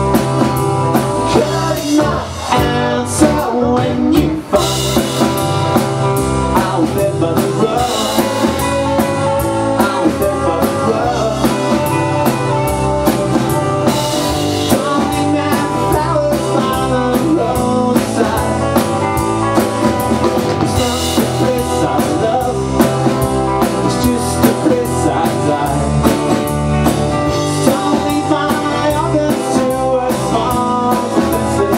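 Live rock band playing a song: drum kit keeping a steady beat under bass guitar and strummed acoustic and electric guitars.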